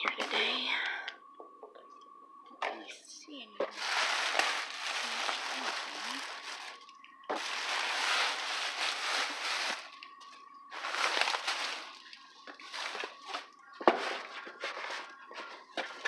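Plastic trash bags and plastic wrap crinkling and rustling in bursts of a few seconds as they are pushed aside and rummaged through, with a sharp knock near the end.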